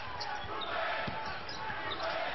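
Arena crowd noise during a college basketball game, with a basketball bouncing on the court.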